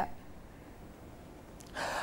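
Low background hiss, then near the end a man's quick in-breath just before he starts speaking.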